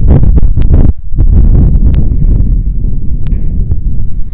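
Wind buffeting the phone's microphone: a loud, rough low rumble that drops out briefly about a second in, with a few sharp clicks.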